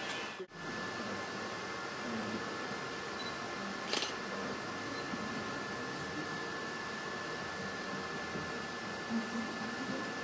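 Room tone: a steady hiss with a thin constant high whine, one short click about four seconds in, and faint murmuring voices near the end.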